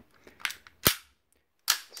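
Sharp metallic click from the action of a WE M712 gas blowback airsoft pistol being handled, with a fainter click about half a second before it.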